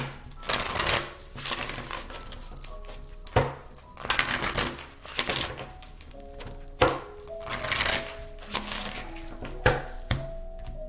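Tarot cards being shuffled by hand: irregular bursts of cards riffling and slapping together, with soft background music holding steady notes underneath.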